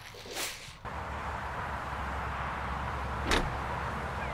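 A steady low rumbling background noise sets in about a second in, with one sharp click or knock a little after three seconds in.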